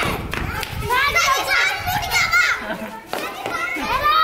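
Children's voices shouting over one another during a kabaddi game, with a short low rumble at the start. Just before the end, one child's high voice rises into a long, held call, as a raider chanting on one breath does.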